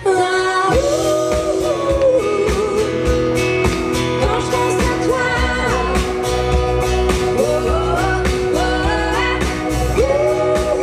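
Live pop-rock band playing: a woman sings the lead melody over acoustic guitar, electric guitar, bass and drums.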